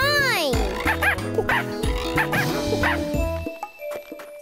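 Children's TV background music with cartoon character vocal effects: a long swooping squeal that rises and falls at the start, then a few short high yips. The music drops away near the end.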